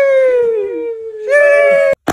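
A drawn-out "sheeesh" exclamation in a high voice: one long held note that sags slowly in pitch, then a second, higher "sheesh" that cuts off suddenly near the end.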